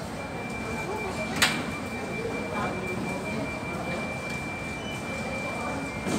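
A steady, high electronic tone held for about six seconds, the kind of alert sounded by airport security screening equipment, with a single sharp click about a second and a half in, over faint room murmur.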